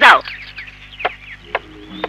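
Chickens clucking faintly in the background, with a few short sharp clicks. Soft film-score music fades in near the end.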